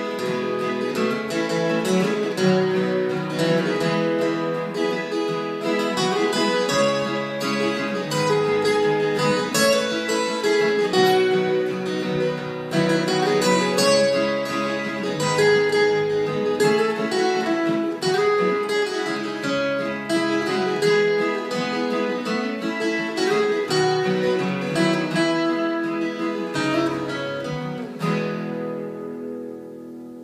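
Two acoustic guitars playing an instrumental passage together, strummed and picked at a steady pace, then a last chord ringing out and fading from about two seconds before the end.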